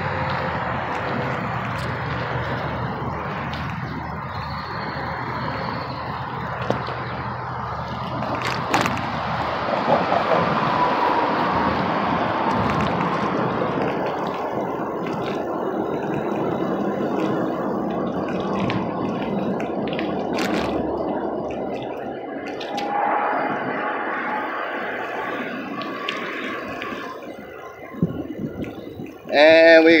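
Steady road traffic noise, with a few sharp clicks scattered through it.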